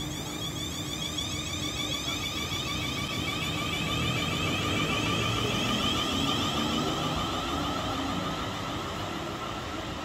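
South Western Railway Class 450 Desiro electric multiple unit pulling away from the platform, its traction motor whine climbing in pitch as it accelerates over the rumble of wheels on rail. It is loudest around the middle and eases as the train draws away.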